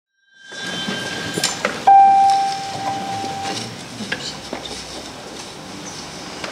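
A crowd getting up from folding chairs, with scattered knocks and clinks of chair frames over a low murmur. About two seconds in, a single steady high note sounds for a second and a half and is the loudest thing heard.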